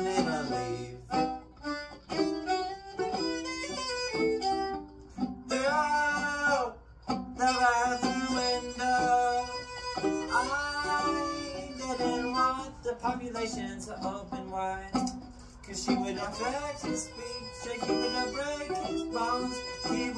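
Violin played with a bow in an instrumental passage between verses: held notes and phrases that slide up and down in pitch.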